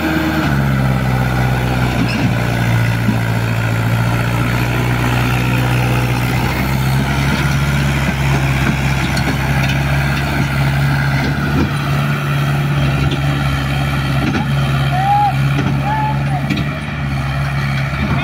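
Mahindra tractor's diesel engine under load, its revs climbing right at the start and then holding high and steady as it pulls a trolley laden with sugarcane across a soft, rain-soaked field.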